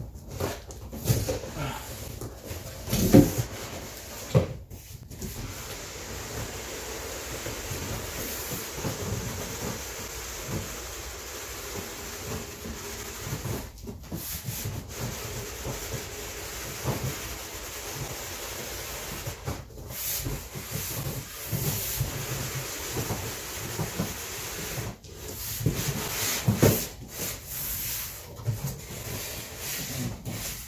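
Cardboard speaker box being handled and slid up off a foam-packed tower speaker: continuous rubbing and scraping of cardboard with scattered knocks and thumps, the loudest about three seconds in.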